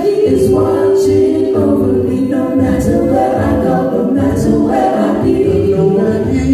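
Small gospel vocal group singing a cappella in harmony, several voices amplified through handheld microphones, holding long sustained notes.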